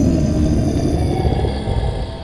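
A loud low rumbling noise that starts suddenly and eases slightly near the end, with faint steady high tones above it.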